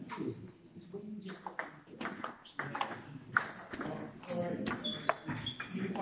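Table tennis rally: the ball clicks sharply off the table and the bats in quick alternation, roughly every half second, with a short high squeak about five seconds in.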